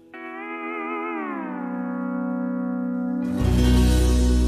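Steel guitar holds a chord that slides down in pitch about a second in and then rings on steadily. Near the end a louder passage with a deep bass comes in.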